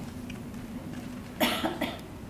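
A person coughing: a short cough in two or three quick bursts about a second and a half in.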